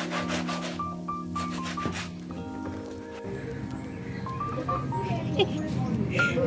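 Stiff scrubbing brush rubbing a wet, soapy shoe in quick back-and-forth strokes, in two bouts over the first two seconds, over steady instrumental background music.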